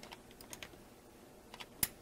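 Small plastic clicks of an RJ45 plug being fitted into a network cable tester's jack: a few faint taps, then one sharper click near the end as the plug latches in.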